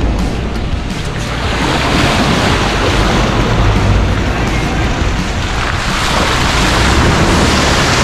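Heavy wind rush on the microphone, a loud, steady roar of air. A low drone runs underneath it.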